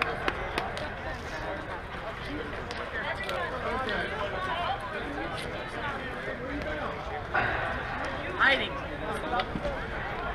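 Indistinct chatter and calls of softball players across an outdoor field, with a louder shout about eight and a half seconds in.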